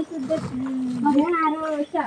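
A drawn-out voice, pitched higher than the narrator's speech, held for more than a second with no words made out.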